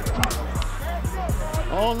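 Hip-hop backing music with a deep bass line and a steady drum beat. Near the end a man's voice exclaims "oh".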